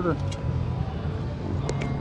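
A steady low drone of a running motor, with a couple of faint sharp clicks near the end.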